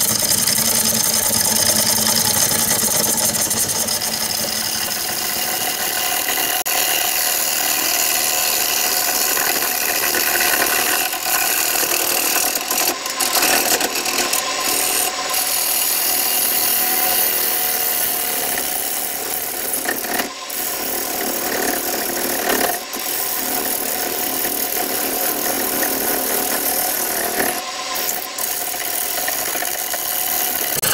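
A freshly sharpened turning gouge cutting a spinning bowl blank on a wood lathe, the blank being what the turner believes is carrot wood. The sound is a steady scraping cut over the running lathe, with a few brief breaks, and the fresh edge is cutting cleanly.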